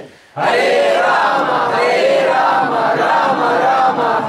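A roomful of devotees' voices shouting and chanting loudly together in a sustained group cry. After a short break just at the start, the voices come in again and hold on.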